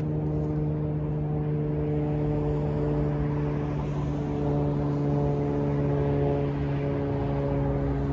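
Steady, low droning hum of a running engine or motor, its pitch shifting slightly about four seconds in and again near the end.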